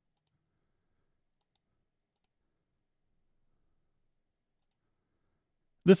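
Near silence with a few faint, sparse clicks from a computer mouse while selecting options from drop-down menus.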